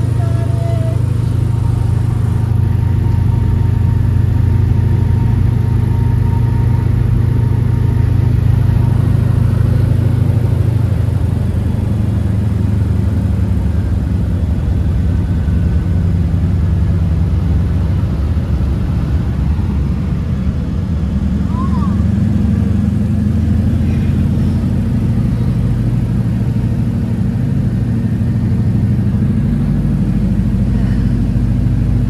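Floatplane's piston engine and propeller droning loudly inside the cabin, a steady low note that shifts in pitch about ten seconds in as power is changed on the descent toward the lake.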